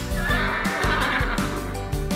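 A horse whinnying for about a second and a half over background music.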